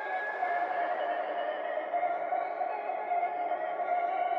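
Background music: a sustained, droning chord held steady.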